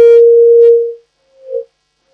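A loud, steady electronic tone on the telephone line that fades out about a second in, followed by a short, fainter blip of the same pitch.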